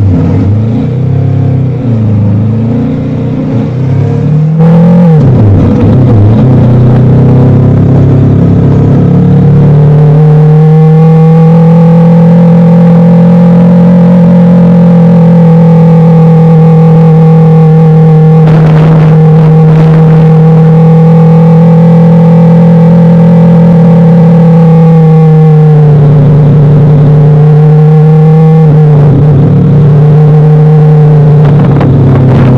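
Motorcycle engine running at a steady cruise, a loud even hum with a steady pitch. Near the end the pitch dips twice and comes back as the throttle eases and opens again. Music plays for the first few seconds before the engine takes over.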